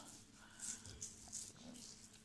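Near silence: room tone with a few faint, brief soft sounds.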